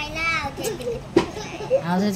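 A child's voice speaking briefly at the start and again near the end, with one sharp click a little past a second in.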